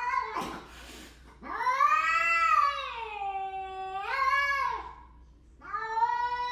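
Cats in a territorial standoff, yowling: a short hiss at the start, then one long wavering yowl that rises and falls for about three seconds, and another beginning near the end.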